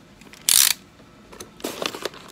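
A short crackle of clear plastic blister packaging being handled, about half a second in, lasting about a quarter second.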